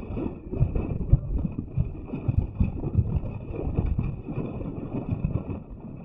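Ocean surf breaking and washing over lava rocks, mixed with wind buffeting the microphone in irregular low gusts.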